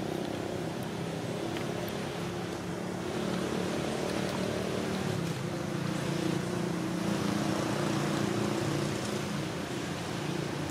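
A motor running steadily with a low, even hum, over outdoor background noise; no animal calls stand out.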